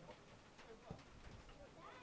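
Near silence with faint, distant voices of footballers calling on the pitch, and a single dull knock about a second in.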